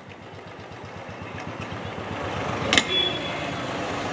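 Motor vehicle passing on a road, its engine and road noise growing steadily louder, with a sharp click a little before three seconds in.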